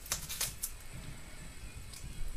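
Faint handling noises of packaged cables being unwrapped, with two light rustles or clicks in the first half-second, then low rustling.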